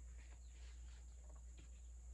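Near silence: room tone with a steady low hum and scattered faint soft ticks.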